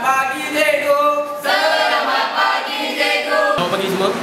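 A group of voices singing together without accompaniment, in held, gliding notes. The singing cuts off suddenly near the end.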